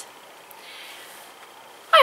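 A quiet pause: room tone, with a small click about half a second in and a faint soft hiss in the middle.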